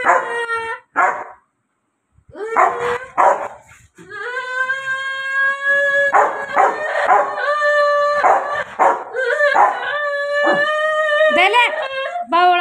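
A Rottweiler howling: a few short yelping cries, then from about four seconds in long, drawn-out howls at a steady pitch with brief breaks.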